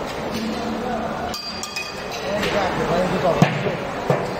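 Background chatter of several voices, with a few ringing clinks of glass or metal about a second and a half in and a sharp knock near the end.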